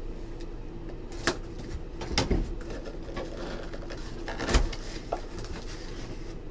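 A cardboard jersey box being handled and its lid opened: a few knocks and scrapes of cardboard, the loudest about four and a half seconds in.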